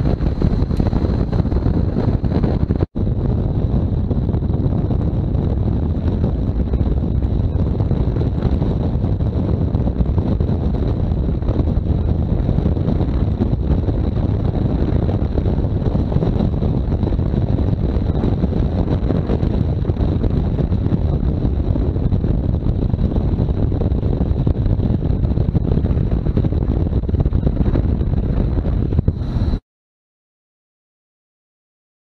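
Steady wind rush on the microphone of a camera on a BMW R1200GS riding at road speed, with the bike's running and road noise under it and a faint steady high whine. There is a momentary dropout about three seconds in, and the sound cuts off suddenly near the end.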